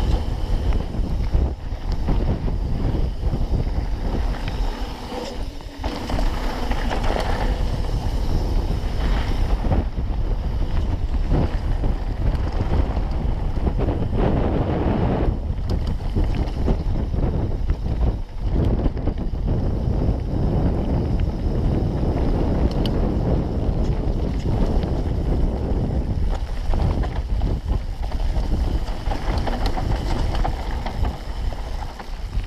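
Wind buffeting an action camera's microphone as a full-suspension mountain bike descends a gravel trail at speed, with the tyres rolling over loose stones. It is a continuous rushing rumble that fluctuates slightly with the terrain.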